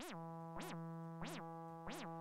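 Native Instruments Massive X software synthesizer holding a steady, buzzy low note, with a quick rising-and-falling sweep repeating about one and a half times a second. The sweep comes from the Exciter envelope cycling in its window mode.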